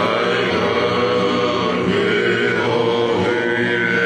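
A group of men singing a Tongan hiva kakala song together, with acoustic guitars played along.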